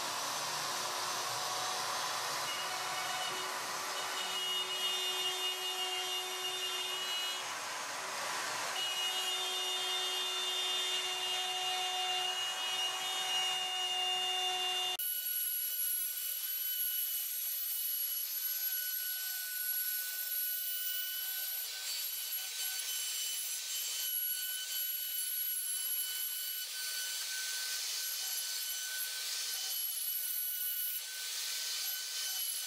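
Electric router with a quarter-inch down-shear bit running at full speed and cutting a 5/16-inch-deep pocket into a wooden table saw top, guided around a template: a steady high motor whine over the rasp of the bit in the wood. About halfway through the tone changes suddenly and loses its low hum.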